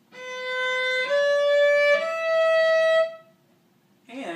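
Cello bowed high in its range: three sustained notes, each about a second long, rising step by step, showing that it can reach violin-like pitches.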